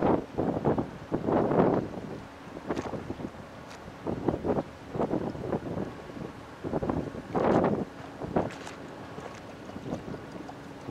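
Wind buffeting the microphone in irregular gusts, the strongest about a second and a half in and again about seven and a half seconds in. Beneath it runs a faint steady hum from the passing ro-ro ferry's engines.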